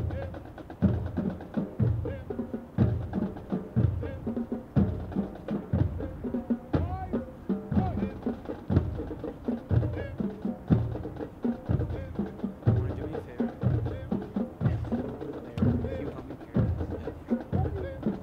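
Marching drum cadence: a bass drum beating steadily about once a second, with lighter snare or rim taps between the beats.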